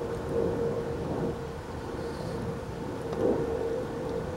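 A flying insect buzzing steadily close by, loudest about three seconds in, over a low rumbling noise.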